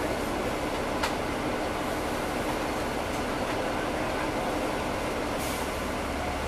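Cabin sound at the rear of a 2009 NABI 40-SFW transit bus: its Caterpillar C13 diesel engine running with the engine cooling fans on, a steady drone. A short click comes about a second in and a brief hiss near the end.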